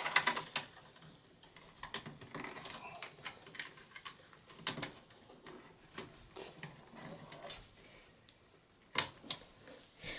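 Cable connectors and plastic parts handled inside an open desktop computer case as the SATA and power cables are plugged back in: scattered small clicks and rattles, with a sharper click right at the start and another about nine seconds in.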